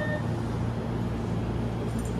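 Electric trains at a station platform: a steady low hum as one train creeps slowly up to another to couple.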